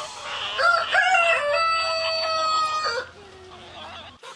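Rooster crowing once: a few short notes leading into a long held note that breaks off about three seconds in.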